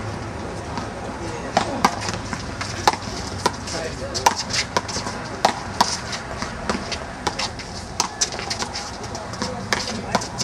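One-wall handball rally: a small rubber ball slapped by gloved hands and smacking off a concrete wall and court, heard as a string of sharp, irregular cracks about every half second to a second.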